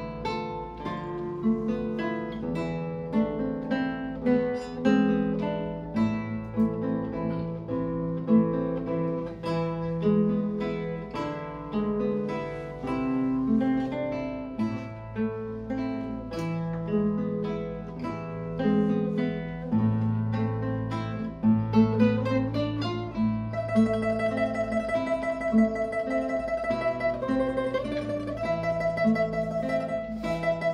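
Two classical guitars playing a duet: a plucked melody over moving bass notes. About three-quarters of the way in, one guitar holds a high note with rapid tremolo picking.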